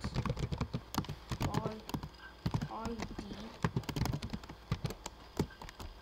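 Computer keyboard typing: rapid, irregular key clacks as a line of code is entered.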